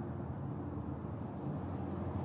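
Steady low outdoor background rumble, with no distinct event.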